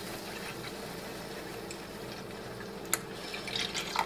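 Half-and-half cream poured in a steady stream from a glass measuring cup into a saucepan of hot roux. There is one sharp click about three seconds in, and a few lighter ticks near the end.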